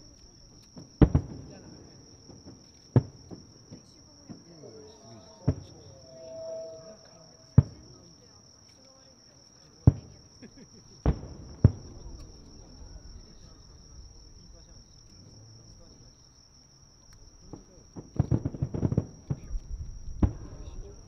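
Aerial firework shells bursting at a distance: about seven single booms one to two seconds apart, then a fast run of many bangs near the end. A steady high insect trill runs underneath.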